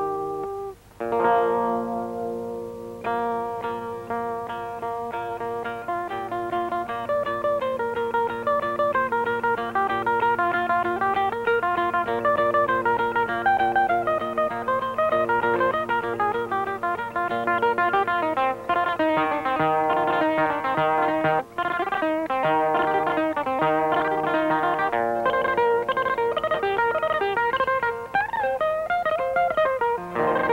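Solo electromagnetic pipa (a pipa with a pickup) playing a plucked melody with dense, fast runs of notes, after a brief break about a second in.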